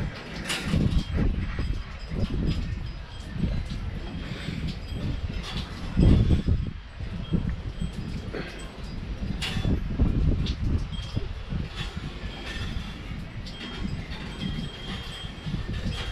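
Porch wind chime tinkling, with a few clear ringing notes that stand out near the end. Under it, gusty wind rumbles on the microphone, with its strongest gust about six seconds in.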